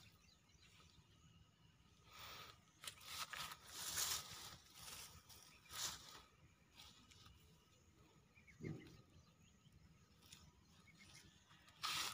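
Grass and leafy weeds rustling as a hand pushes through them, in a few short bursts about two to six seconds in, with a soft bump a little later; otherwise near silence.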